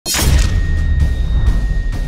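Produced intro sting for a logo animation: it starts with a sudden loud hit and a whoosh, over a deep bass rumble, with a thin high tone held steady and further sharp hits later on.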